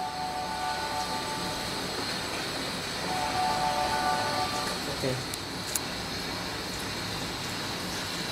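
Water from a salon shampoo-bowl sprayer running through hair into the sink, a steady hiss, while conditioner is rinsed out. Faint held musical tones sound twice over it, and there are a couple of small clicks about five seconds in.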